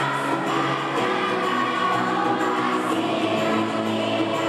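Children's choir singing, the voices holding sustained notes that change about once a second.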